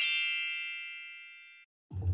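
A bright metallic ding sound effect, entered with a short rising swoosh, ringing and fading away over about a second and a half. A low hum starts right at the end.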